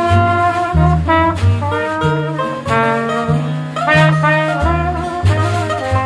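Acoustic jazz band playing an instrumental passage: a brass lead melody over a walking upright string bass.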